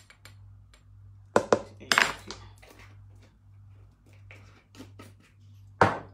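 Kitchen utensils and dishes clinking and knocking: a pair of sharp knocks about one and a half seconds in, a short clatter just after, and one more sharp knock near the end, over a steady low hum.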